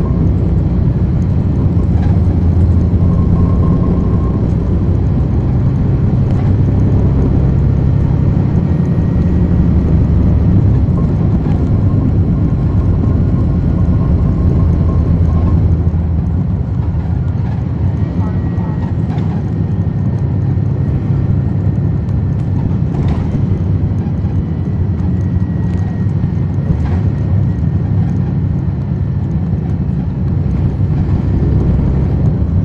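Cummins ISL9 diesel engine of a 2010 NABI 40-SFW transit bus running under way, heard inside the cabin from the rear seats as a steady low drone. It eases a little about halfway through.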